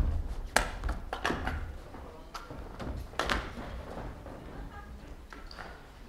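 Footsteps and irregular knocks on a stage floor as several people walk off, loudest and most frequent in the first half, with faint voices now and then.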